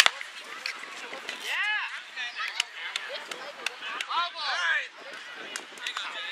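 A single sharp crack of a softball bat hitting the ball, the loudest sound, right at the start. Several drawn-out shouted calls from players follow.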